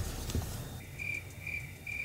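Cricket chirping sound effect, the stock "crickets" gag for an awkward silence after a joke: a thin high chirp that starts a little under a second in and pulses three times, about a third of a second apart.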